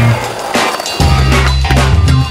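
Music soundtrack with a heavy bass line and a regular beat.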